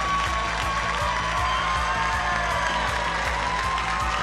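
Game-show win music cue playing over steady studio-audience applause.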